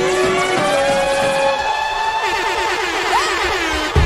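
Background music: an electronic track with several sliding synth tones that glide up and down in pitch, and a short rising-and-falling swoop about three seconds in.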